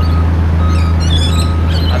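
A steady low hum of outdoor background noise, with a few short high bird chirps about halfway through.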